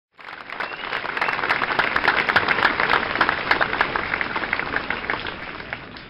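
Crowd applause, dense clapping that builds over the first couple of seconds and then slowly fades away.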